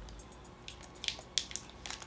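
Faint handling of a foil tea pouch as fingers pick at it to tear it open, with a few short crinkles and clicks, the clearest about a second in.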